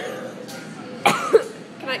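A person coughing, two sharp bursts about a second in, among people's voices.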